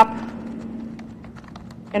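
Faint, irregular light taps and clicks over a steady low hum in a quiet, reverberant room.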